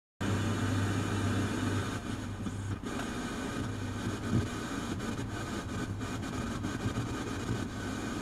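Steady low hum over background noise, stronger for the first few seconds and then dropping back, with a few faint clicks.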